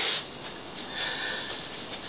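A woman sniffing: a short breathy sound through the nose about a second in, over faint room noise.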